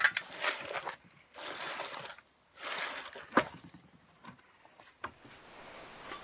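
A four-block soil blocker being pushed and worked down into wet potting soil in a plastic tub: three rough scraping, squelching strokes in the first three seconds, then a sharp knock and a few faint clicks.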